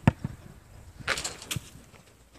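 A football kicked with a sharp thud at the start, then about a second later a short rustle and a smaller knock as the ball reaches the goal.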